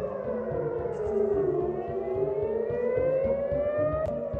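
Civil-defence air-raid siren wailing, its pitch sliding down for about two seconds and then rising again, with several overtones moving together. It is a warning to take shelter from incoming rockets.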